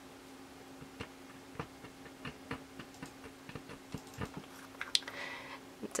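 Light, irregular clicks and taps of small plastic cosmetic jars, lids and a toothpick against a plastic mixing palette, with a sharper click and a brief scraping sound about five seconds in, over a faint steady hum.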